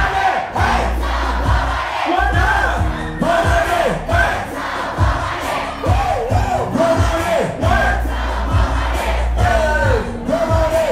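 Loud live hip-hop: a booming bass beat with vocals on the microphone and a crowd shouting along.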